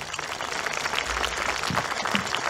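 A crowd applauding: many hands clapping at once, steady throughout.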